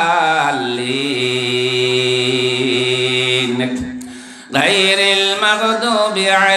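A man's voice chanting in a melodic sermon style through a microphone. He holds one long steady note for about three seconds, which fades out about four seconds in, then after a short breath he resumes with wavering, melodic phrases.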